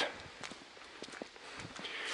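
Faint footsteps of a hiker climbing a dry leaf-littered forest path, a few soft crunches and clicks.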